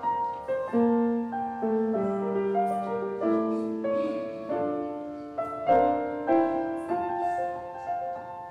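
Piano playing a slow church prelude: a quiet melody over chords, each note ringing on and fading.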